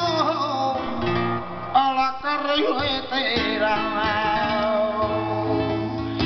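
Flamenco soleá: a male singer's drawn-out, wavering melismatic phrases over flamenco guitar accompaniment. The voice carries the first half, and the guitar plays on under and after it.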